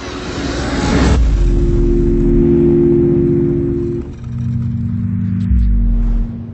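Logo-intro sound effect: a noisy whoosh swells up over the first second into a deep bass boom, followed by a held low droning chord. The drone dips briefly about four seconds in, and a second deep boom lands near the end.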